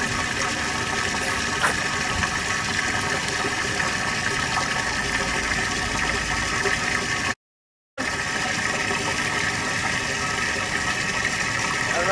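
Bass boat's livewell pump running steadily, a hum with water splashing. The sound cuts out completely for about half a second just past the middle.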